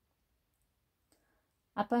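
Near silence with a single faint click about a second in, then a narrator's voice starts speaking near the end.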